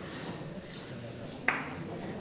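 Quiet hall room tone, broken by a single sharp knock with a short ring about one and a half seconds in.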